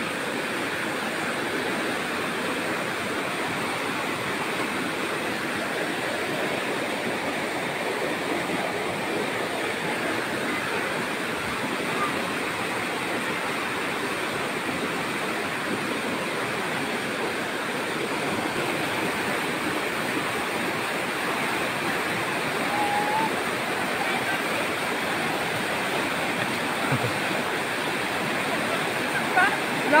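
Fast-flowing river in spate rushing steadily below the crossing, a constant even roar of water.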